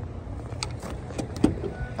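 A pickup truck's door latch clicks once, sharply, about one and a half seconds in, as the door is opened. Under it are a low rumble and a few lighter clicks from handling.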